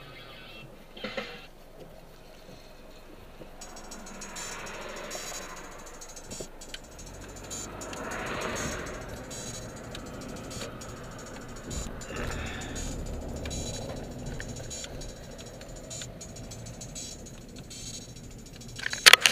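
Cabin noise inside a slowly moving car, swelling and easing a few times as it drives and turns, with light clicks and rattles and faint music underneath.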